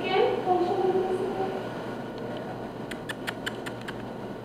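A woman's soft, drawn-out voice for about the first second and a half, then a quick run of six or seven light clicks near the end.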